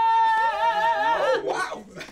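Voices singing a long held note together: the top voice holds steady, then wavers, while a lower voice joins about half a second in, and the sound dies away after about a second and a half.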